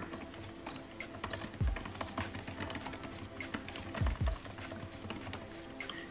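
Typing on a 2020 13-inch MacBook Pro's Magic Keyboard, whose keys use scissor switches: a quick, continuous run of light key clicks, with soft background music underneath.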